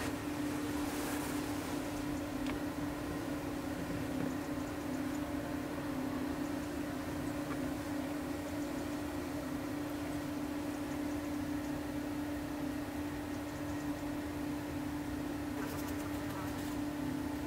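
Steady, unbroken hum of a bathroom extractor fan running, one constant pitch with fainter tones above it.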